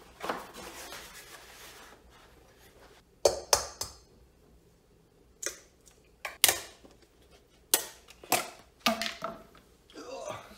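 Eggs being tapped and cracked against the rim of a stainless steel mixing bowl: a series of sharp taps in small clusters, the first few with a brief metallic ring from the bowl. Soft handling rustle comes before them.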